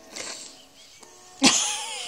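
A young cat meowing close to the microphone, with a sharp, loud call starting about one and a half seconds in, over faint background music.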